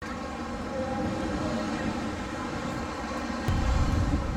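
Steady outdoor hum of distant engines, with a deeper rumble coming in suddenly near the end.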